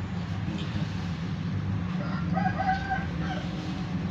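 A rooster crowing once, a single long call of about a second and a half starting halfway through, over a steady low hum.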